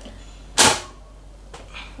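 Portable gas stove's control being worked: one sharp click with a short hiss about half a second in.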